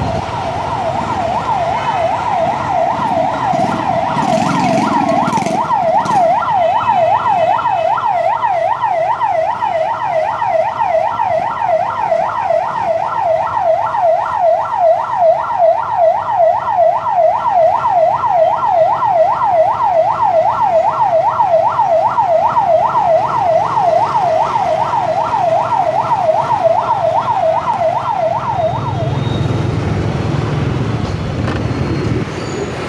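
Ambulance siren at close range in heavy motorbike traffic, sounding a fast warbling yelp of about three sweeps a second. It cuts off near the end.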